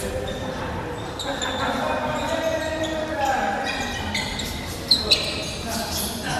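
Boxers' feet thudding and bouncing on a wooden gym floor during footwork drills, with voices in the background and a reverberant large-hall sound. Two sharp, loud snaps come close together about five seconds in.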